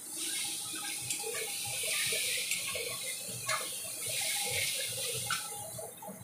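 Chicken pieces and potatoes frying in spiced oil in a steel wok over a gas flame: a steady sizzle with scattered crackles and a few sharp clicks.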